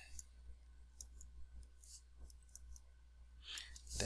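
Faint, scattered clicks of a stylus tapping and moving on a tablet screen during handwriting, over a low steady hum.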